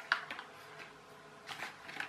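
Light handling noises from a homemade plastic-and-cardboard toy train being picked up: a few soft clicks and rustles near the start and again about one and a half seconds in, over a faint steady hum.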